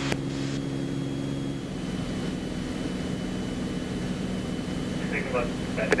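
Steady drone of a Beechcraft Bonanza's piston engine and propeller in climbing flight. Its tone shifts slightly a little under two seconds in.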